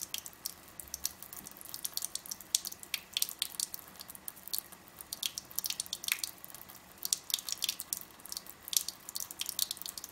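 Thin stream of water from a kitchen faucet falling into the sink. It makes an irregular patter of sharp, splashy ticks, several a second, over a faint steady trickle.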